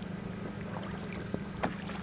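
Boat engine idling with a steady low hum, with a couple of light knocks in the second half.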